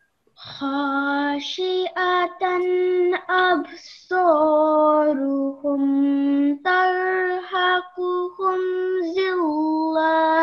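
A student's high voice reciting a verse of the Quran in a slow, melodic chant, holding long steady notes with short breaks between phrases; the words are 'khashi'atan absaruhum tarhaquhum dhillah'.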